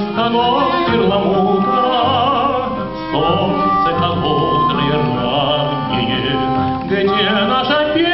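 Live acoustic ensemble playing a slow song, with a violin carrying a wavering vibrato melody over the accompaniment.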